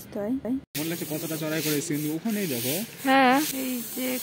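A voice singing, with long held notes and a strongly wavering note near the end, over a steady rough hiss that sets in after a short cut about a second in.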